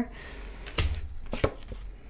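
A few light taps and knocks on a tabletop as tarot cards are handled, the first about a second in with a low thump.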